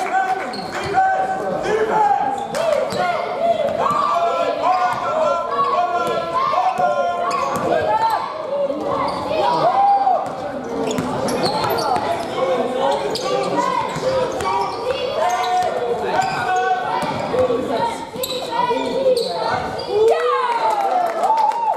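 Live basketball play in a large, echoing sports hall: the ball bouncing on the court and many short, high sneaker squeaks on the floor throughout, with players' voices among them.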